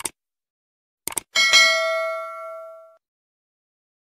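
Subscribe-button animation sound effect: a click, then a quick double click about a second in, followed by a notification-bell ding that rings and fades out over about a second and a half.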